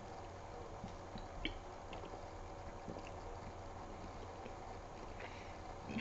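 Faint gulps and swallows of a drink taken from a plastic bottle, with a few soft clicks.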